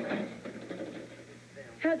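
Studio audience laughter fading away over the first half-second, then a voice starts to speak just before the end.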